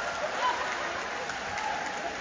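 Live audience applauding, an even patter of clapping with faint talk from the stage under it.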